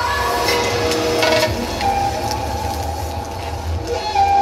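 Stage dance backing track in a passage without a beat: a steady low rumble with a falling tone and a couple of sharp hits early on, then a held tone from about two seconds in.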